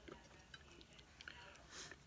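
Near silence, with a few faint small clicks and a brief soft rustle near the end from hands handling fly-tying materials at the vise.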